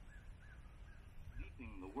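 A bird calls four short, thin notes over a low background rumble; a man's voice begins near the end.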